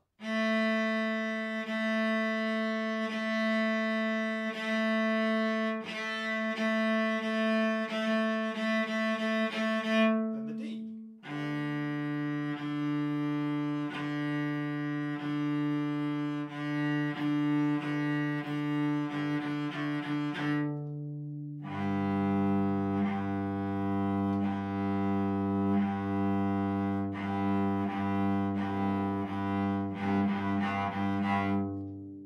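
Solo cello bowed on open strings in a warm-up pattern: four long whole-bow notes, four half-bow notes, then four quicker quarter-bow notes ending on a big loud note. It is played first on the A string, then on the D string about eleven seconds in, then on the G string about twenty-two seconds in.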